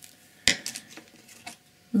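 A sharp click about half a second in, then a few lighter clicks and clinks: hard painting supplies, such as a paint pot or brush, being picked up and handled.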